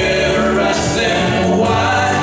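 A group of voices singing together live, with acoustic and electric guitar accompaniment, holding sustained notes.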